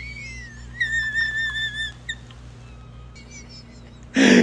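A high, whistle-like tone that slides upward, then holds a steady note for about a second before breaking off, followed by a few faint shorter notes.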